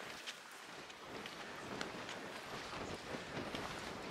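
Footsteps of hikers walking on a stony dirt path, a scatter of faint crunches and taps, over a low rumble that grows from about a second in.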